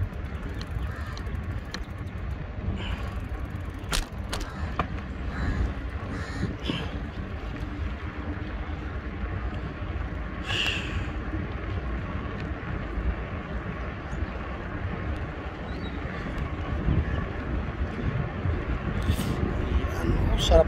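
Low rumble of wind on the microphone and tyre noise from a bicycle rolling along a paved road, with a few faint clicks about four seconds in and a brief higher-pitched sound about ten seconds in.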